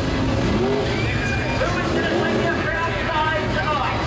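Several sprintcar V8 engines running together as a pack, revving up and down, with many overlapping pitches rising and falling over a steady low rumble.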